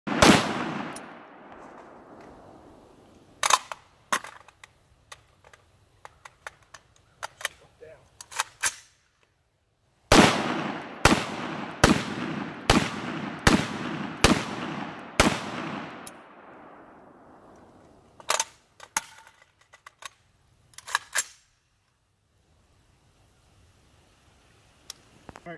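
Rifle shots from a CMMG Mutant in 7.62x39, fired at an uneven pace with a quick string of about seven shots under a second apart in the middle. Each shot is loud and leaves a long echoing tail.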